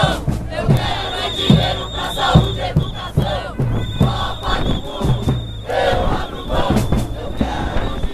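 A crowd of marchers chanting and shouting together over a steady drum beat, about one stroke a second. A long, high, steady tone sounds on and off over the voices.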